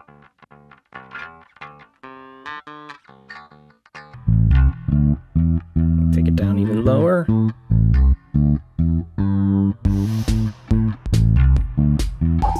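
Electric bass guitar run through chorus and an Erosion distortion effect: a few quiet plucked notes, then about four seconds in a much louder bass line of repeated low notes.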